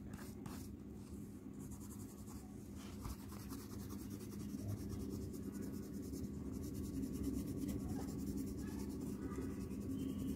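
Coloured pencil scratching across drawing paper in steady shading strokes, slowly growing louder.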